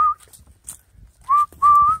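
A person whistling to call puppies: a short upward slur into a longer held note. The tail of one whistle is at the very start and a full one comes about a second and a half in.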